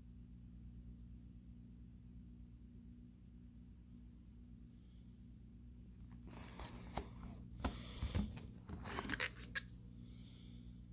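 Plastic binder page of sleeved trading cards being turned: crinkling and a few sharp clicks over about four seconds, starting about six seconds in. Before that there is only a faint steady low hum.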